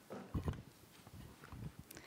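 A few soft, low thumps about half a second in, then scattered small knocks and clicks: handling noise at a podium and its microphone as a speaker settles in.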